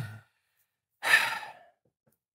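A man's single breathy sigh about a second in, fading out over about half a second.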